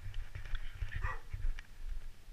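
Footsteps in ski boots going down wooden stairs, a series of dull thumps with faint clicks, over wind rumble on the microphone. About a second in there is one short squeak that falls in pitch.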